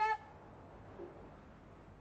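The tail of a boy's single high-pitched call of a dog's name, "Shep!", in the first moment, followed by low steady background hiss.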